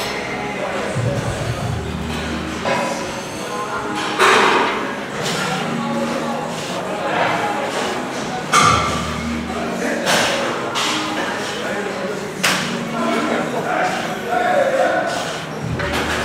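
Busy gym ambience: background music and people talking across a large room, with several sharp thuds spread through it.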